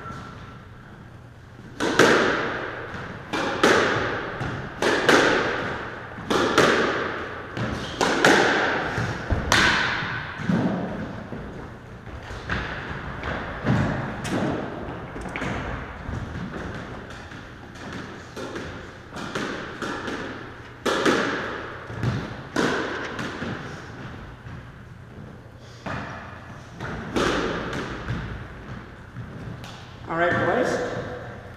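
Squash ball being hit back and forth: sharp racket strikes and the ball thudding off the court walls, roughly one impact every second, each echoing around the enclosed court. The hitting is loudest and most regular in the first half and lighter later on.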